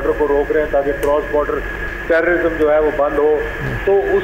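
Speech only: a man talking over a telephone line, his voice thin and cut off at the top, with a faint steady tone behind it.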